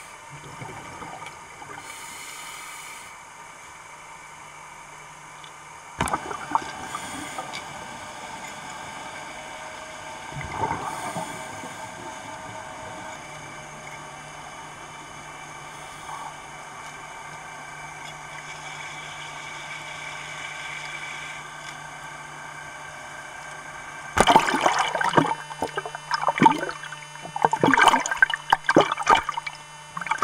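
Underwater sound through a camera housing: a steady wash of water noise, joined about halfway through by a low steady hum. Near the end, loud irregular bursts of splashing and bubbling as the camera comes up to the surface.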